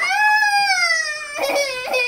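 A toddler crying in frustration: one long, high wail that slides down in pitch, then a shorter, lower cry.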